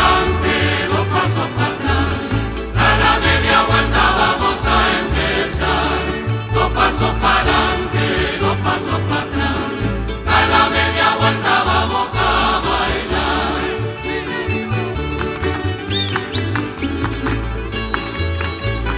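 Canarian folk music from a large plucked-string rondalla of guitars and laúdes over a steady double-bass line, with many voices singing together in phrases a few seconds long. Near the end the singing drops away and the instruments carry on alone.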